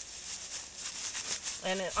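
Dry, dead oat cover-crop straw rustling as it is pulled up by hand and shaken off its roots.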